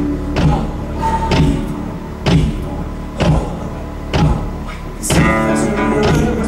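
Instrumental break of a folk sea shanty played live: strummed acoustic guitar, upright bass and a kick drum beating about once a second, with a whistle playing the tune.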